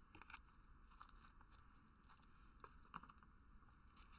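Near silence, with a few faint, scattered clicks of trading cards being handled and shuffled in the hands.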